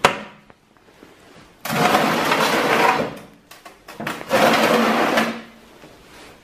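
Two loud rushing, scraping bursts, each about a second long, as an old fresh-air breathing apparatus box is handled and shifted on the floor, its lid shut.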